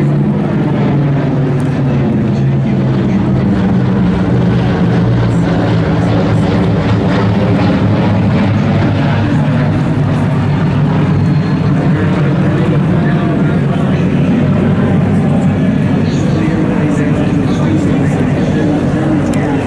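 Four-engine propeller aircraft flying overhead, a loud steady drone of its engines whose pitch slowly falls over the first few seconds as it passes and draws away.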